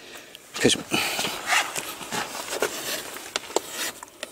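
Hoof rasp drawn over the edge of a horse's hoof wall in repeated, uneven strokes, putting a rounded roll on the edge of the freshly trimmed hoof.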